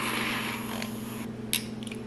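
Handheld battery milk frother wand whirring as it whisks greens powder into liquid in a glass. It stops a little over a second in, followed by two light clicks.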